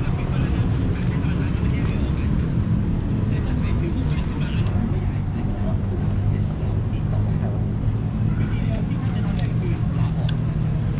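Steady low rumble of city road traffic, with people talking in the background.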